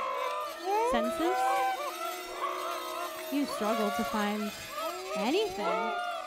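Layered, electronically processed wordless vocal sounds: several voice-like tones sliding up and down in pitch over one another, with a steadier low tone under part of it.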